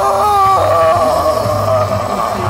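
A man yelling with his mouth wide open: a short shout, then one long cry held on a nearly steady pitch.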